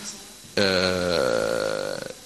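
A man's drawn-out hesitation sound: one long held vowel starting about half a second in and lasting about a second and a half at a steady pitch.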